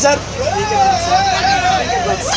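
A person's voice holding one long drawn-out sound for about a second and a half, over the steady low rumble of a running bus heard from inside the cabin.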